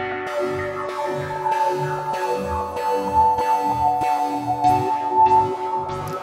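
Held synthesizer chord run through the Koshiba sequenced-gate effect, with its filter envelope set to an extreme amount, making a percussive, rhythmic pattern. The chord tones hold steady over a low pulse of about two beats a second, with recurring swishes in the highs.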